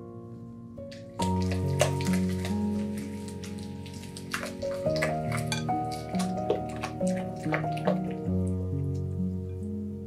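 Instrumental background music, its bass line coming in about a second in, over irregular wet clicks and squelches of a silicone spatula stirring thick batter in a glass bowl.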